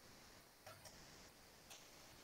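Near silence with three faint clicks of a computer mouse.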